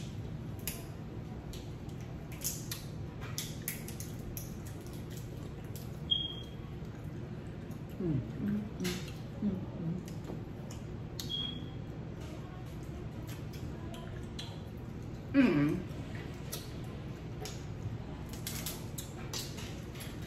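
Crab shells being cracked and picked apart by hand, with scattered sharp clicks and snaps and soft wet eating noises over a steady low hum. A couple of brief murmured "mm" sounds come in partway through.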